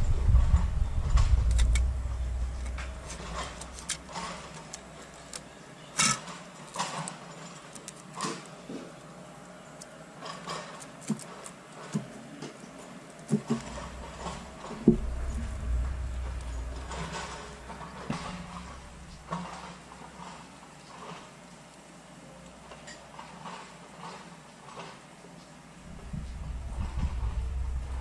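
Outdoor ambience by a pond: a low rumble that swells and fades three times, with scattered sharp clicks and taps throughout.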